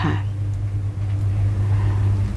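A steady low machine hum running without change, under a woman's short spoken word at the start.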